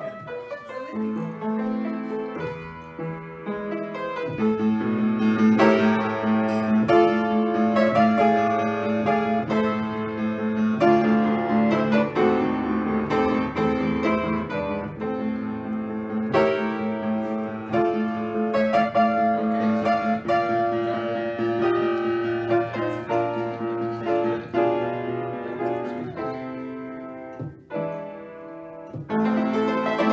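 Upright piano played by hand: a continuous piece of many quick notes over held low notes, with a short drop in level near the end.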